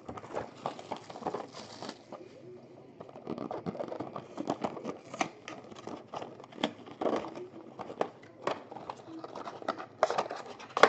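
Hands handling a cardboard Panini Pantheon trading-card box and sliding its lid off. A rubbing, rustling scrape early on, then scattered light taps and knocks of cardboard.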